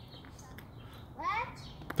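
One short vocal sound from a person, rising then falling in pitch, about a second and a half in, over a quiet outdoor background.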